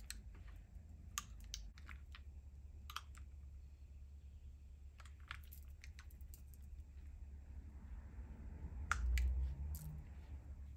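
Scattered light clicks and soft handling noise of a comb and hands working through a short synthetic-hair wig, over a low steady hum, with a slightly heavier bump near the end.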